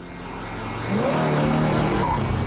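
Cartoon police-car engine growing louder as the car approaches, its note rising about a second in and then running steadily.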